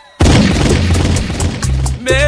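DJ mix transition effect: after a brief drop-out, a sudden boom hits a fraction of a second in, followed by a wash of noise over deep bass notes.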